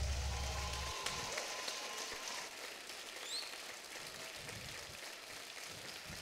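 The end of the music fading out: a low held note dies away about a second in, leaving a faint, even hiss that keeps fading.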